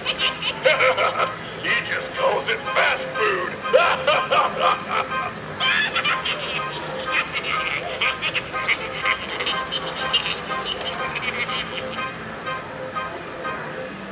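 Animatronic clown prop's sound track playing from its built-in speaker: a clown character's voice over music, with no clear words. It fades toward the end.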